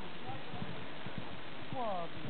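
Hoofbeats of a horse cantering on grass, a run of dull thuds, under voices. Near the end a short falling voice-like call stands out.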